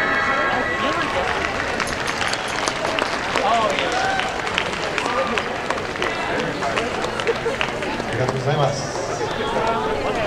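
Dance music cuts off at the very start. An outdoor audience then murmurs and chatters, with scattered hand claps in the first half.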